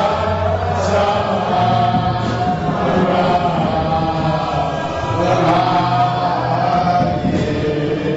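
A congregation singing together in worship, many voices holding long notes in chant-like phrases over a steady low accompaniment.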